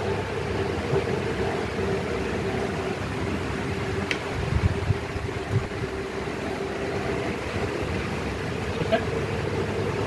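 Steady mechanical hum of room background noise, with a few faint clicks and soft knocks about halfway through and again near the end.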